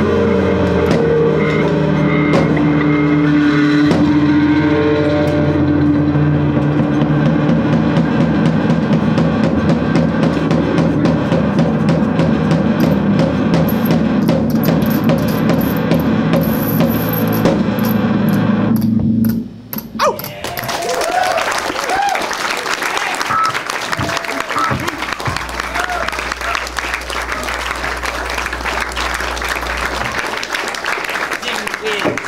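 Live band with a drum kit and string instruments playing the end of a song, which stops abruptly about two-thirds of the way through. Audience applause follows.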